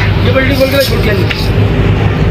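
Indistinct voices of people over a steady, loud low mechanical hum.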